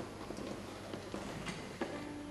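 Quiet hall with faint scattered clicks and rustles as the violist holds the viola ready to play; right at the end a sharper click and the first bowed viola note begins, a steady held tone.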